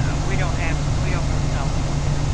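Steady low hum with an even hiss behind it, from a poor recording through a camera's built-in microphone. Faint speech comes and goes over it.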